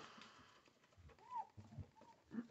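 Faint wiping of a wet wipe across a glass craft mat, with one short squeak just past halfway.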